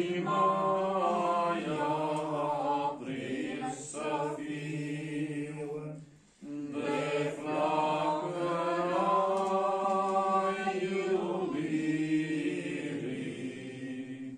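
A congregation singing a hymn unaccompanied, in long sustained phrases, with a short pause for breath about six seconds in.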